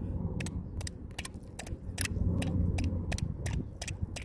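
Quick, irregular light taps, about three or four a second, of a rock hammer striking a thin stake to drive it into a rocky bottom, over a steady low rumble.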